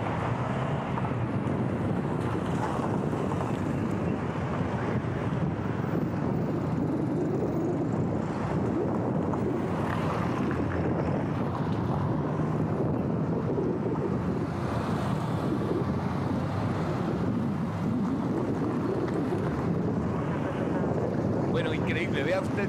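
Steady road traffic noise: cars, motorcycles and a light truck passing close by, with wind rumbling on the microphone.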